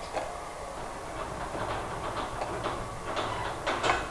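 A spatula scraping and tapping as pieces of fried pork are served onto a paper plate: a string of light, irregular clicks and scrapes.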